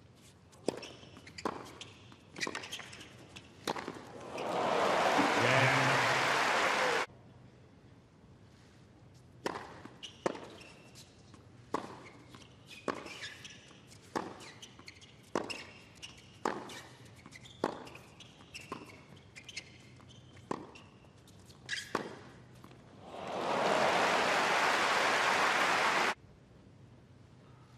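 Tennis rallies: racquets striking the ball about once a second, sharp pops with the odd bounce between them. Each rally ends in a swell of crowd applause and cheering, the first cut off suddenly by an edit.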